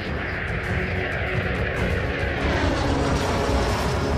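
Jet noise from the Bayraktar Kizilelma unmanned fighter's single Ivchenko-Progress turbofan as it flies past, the pitch falling steadily as it moves away.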